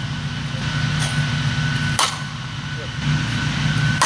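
Softball bat hitting pitched balls: a sharp crack about two seconds in and another right at the end, over a steady low hum.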